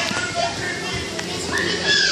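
Children's voices and background chatter in a busy gym hall, with a high call near the end.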